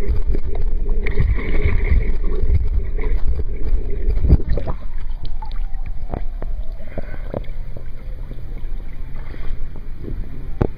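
Pool water sloshing and splashing around a swimmer: a dense, muffled rumble heard with the microphone underwater, which about halfway through gives way to lighter, scattered splashes and drips heard above the surface.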